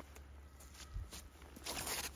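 Footsteps on the forest floor and a jacket rustling as a disc golf player throws, with a soft thump about a second in and the loudest rustle near the end at the release.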